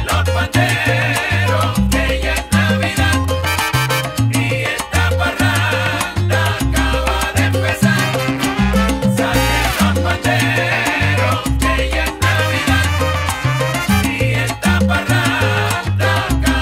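Salsa music from a full band, with a bass playing a repeating pattern of short low notes under hand percussion, piano and a horn section.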